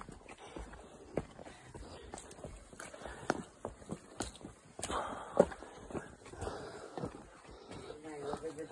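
Hikers' footsteps on a forest trail and across wooden boardwalk planks: uneven soft steps with scattered short knocks.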